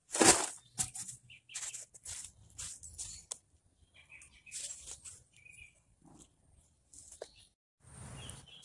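A metal shovel tipping a load of soil into a plastic plant pot: a loud scrape and rush of falling soil just after the start. It is followed by a series of quieter rustles, scrapes and a sharp knock as the soil is handled.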